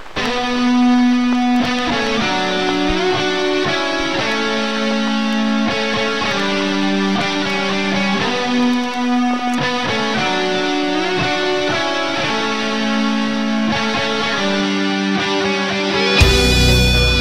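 Intro of a melodic death metal song: electric guitar playing a slow melody of held notes, with no drums.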